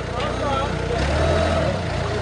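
Engine idling steadily, a low even rumble that strengthens a little about halfway through, with men's voices in the background.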